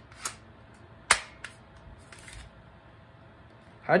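Sharp plastic clicks from a BB gun and its magazine being handled. A loud snap comes about a second in, with smaller clicks either side and a brief rattle a second later.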